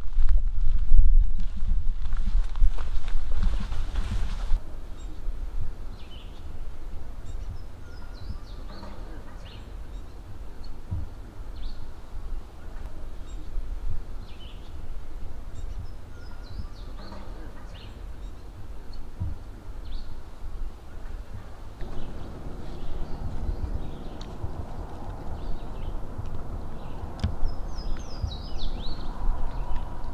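Outdoor ambience of songbirds chirping now and then in short high calls, with a quick run of calls near the end. A low rumble lies underneath and is loudest in the first few seconds.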